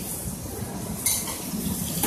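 Beef frying in oil on a hot flat-top griddle: a steady sizzling hiss, with a short, sharper sound about a second in.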